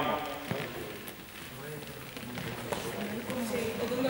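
Footsteps of players moving across a sports-hall floor, with a couple of light knocks and faint voices in the background.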